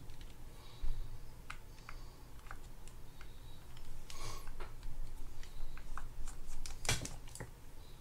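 Light clicks and scrapes of a small screwdriver working the set screw on a spinning reel's rotor, with handling of the metal reel parts; a longer scrape a little over four seconds in and a sharper click about seven seconds in.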